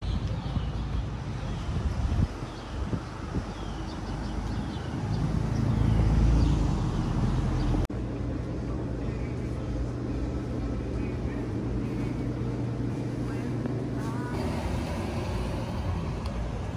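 Street ambience with a motor vehicle passing, its low rumble swelling to a peak about six seconds in. After a sudden cut comes a steady low hum with faint voices in the background.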